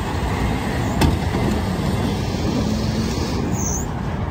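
Ford Excursion's engine running hard as its tyres spin in soft sand, with a sharp knock about a second in.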